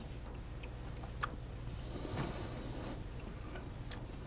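Quiet chewing close to a lapel microphone: a few faint mouth clicks and soft ticks, one clearer about a second in, over a low steady hum.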